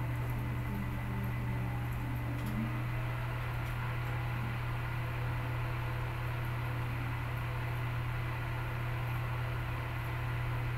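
Steady low hum with an even background hiss and a few faint ticks: machine noise picked up by the microphone.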